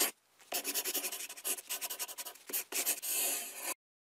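Writing sound effect: quick, scratchy pen strokes, with a short pause just after the start and one longer stroke near the end before it cuts off.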